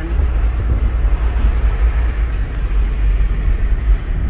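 Steady road noise inside a moving car: a loud low rumble with a fainter hiss above it.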